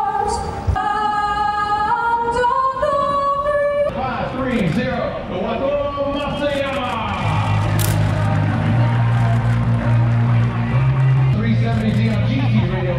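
A woman singing unaccompanied over a public address system, holding long notes that step upward. About four seconds in the singing gives way to crowd cheering and a voice, and a few seconds later a low steady hum sets in beneath them.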